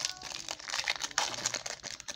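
Foil wrapper of a trading-card pack being torn open and crinkled by hand: a continuous, irregular crackle.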